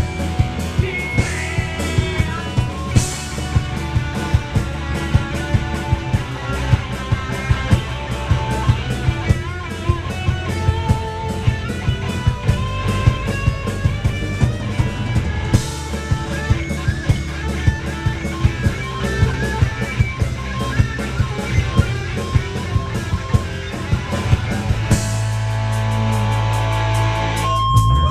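A live rock band playing an instrumental passage: electric guitar lines over bass and a steady drum beat. There are cymbal crashes at about 1, 13 and 23 seconds in, and near the end the band settles into a held, ringing chord.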